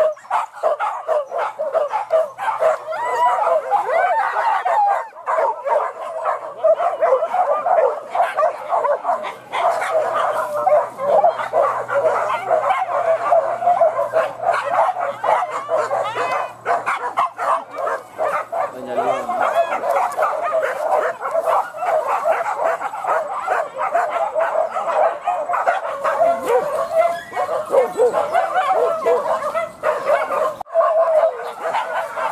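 Many leashed hunting dogs whining and yipping all at once, a steady overlapping din with no pause: the pack is excited and straining to be let loose for the wild boar chase.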